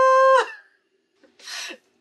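A woman's high-pitched, drawn-out "Ah!" as she laughs, cut off about half a second in, followed by a short breath about a second later.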